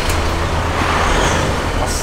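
Volkswagen Amarok's diesel engine running, heard from the driver's seat with the door open: a steady low rumble that sounds like a truck, with a brief swell in the middle.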